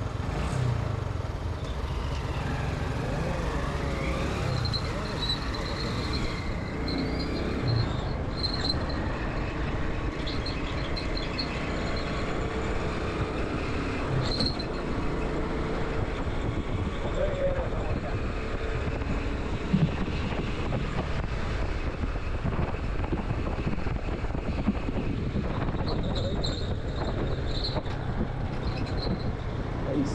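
Motorcycle riding along a city road: steady engine and road noise with wind on the helmet-mounted microphone, and light traffic passing.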